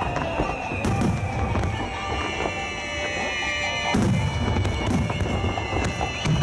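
Rapid barrage of 15 cm (No. 5) aerial firework shells, with launch and burst bangs coming every fraction of a second over a continuous rumble. The loudest bangs come about a second in and about four seconds in. Thin whistling tones glide slightly downward in pitch, most of them in the middle of the barrage.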